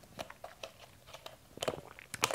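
Faint, irregular small clicks and light crackles of handling noise, with a short cluster of them near the end.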